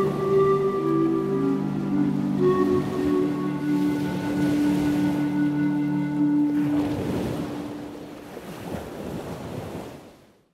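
Ambient outro music of steady held tones; the tones stop about seven seconds in, giving way to a whooshing noise swell that fades out at the end.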